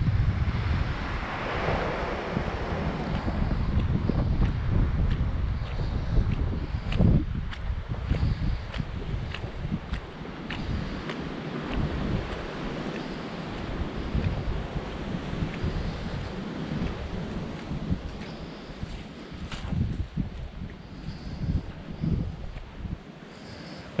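Wind buffeting the camera microphone in uneven gusts, over a steady surf-like hiss, with scattered light clicks.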